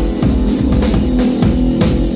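Live band music: an acoustic drum kit played with rapid, dense strokes over electronic keyboards and a held low bass line.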